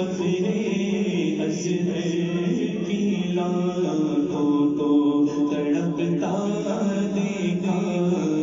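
Devotional vocal chanting in long, held melodic lines, sung continuously without a break.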